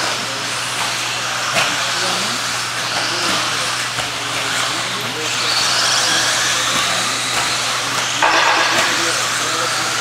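Electric 1/10-scale RC buggies with 17.5-turn brushless motors racing on an indoor dirt track, motors whining as they speed up and slow down over tyre noise on the dirt. There is a sharp knock about one and a half seconds in.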